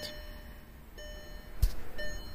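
Faint electronic chime tones that sound again about a second later, with a short knock of handling about one and a half seconds in.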